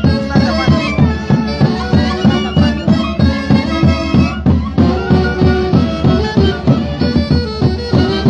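Orquesta típica from the central Andes of Peru playing a Santiago: saxophones and clarinets carry the melody with a violin, over a steady beat on a bass drum.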